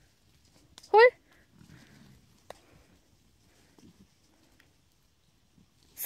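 A single short shouted call, rising in pitch, about a second in; otherwise only faint low sounds of an open field, with one small click near the middle.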